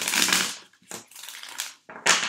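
A tarot deck being riffle-shuffled by hand. A loud riffle of cards flicking together opens it, followed by a softer rustle as the cards settle, and then a second quick riffle starts near the end.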